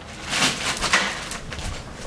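Rustling and shuffling of people getting up from a couch: an uneven noisy haze with scattered faint ticks.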